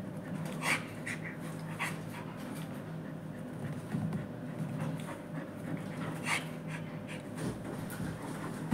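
Dog panting as it mouths a person's hand in play, with a few short, sharp breathy sounds now and then.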